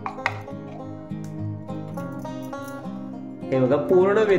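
Background music: a light plucked-string tune in steady notes. A voice comes in near the end.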